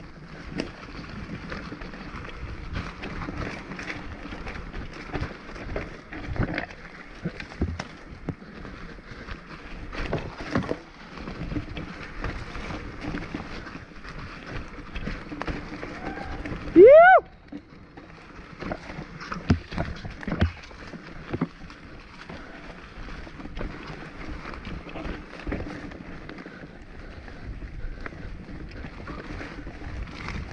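Mountain bike rolling down a rough dirt trail: a continuous rush of tyre and ride noise with frequent knocks and rattles over the bumps. A short rising whoop from the rider about 17 seconds in is the loudest sound.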